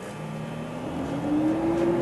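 Blast cabinet's dust-collector blower motor starting up: a hum that rises in pitch as it spins up over about a second and a half, then settles to a steady drone.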